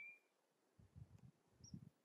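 Near silence outdoors, with a brief high chirp at the very start and a few faint low thumps in the second half.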